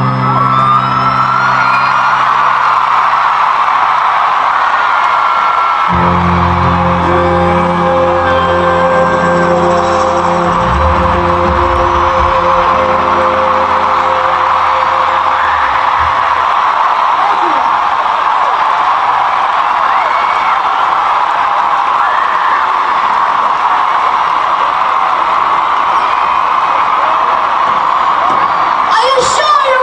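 Large concert crowd cheering and screaming over the last held notes of a live rock song. The band's notes die away a little past halfway, leaving only the crowd's steady cheering.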